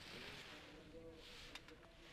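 Faint hiss and scrape of slalom skis carving turns on snow, swelling with each turn about once a second, with two or three sharp knocks of gate poles being struck a little after halfway.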